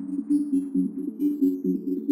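Techno track in a quieter stretch without a kick drum: a fast pulsing synth riff repeating about four times a second in the low-mid range, with scattered short high electronic blips.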